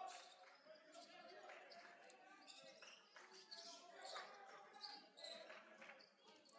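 Faint gym sound: a basketball being dribbled on a hardwood court, with distant voices in a large hall.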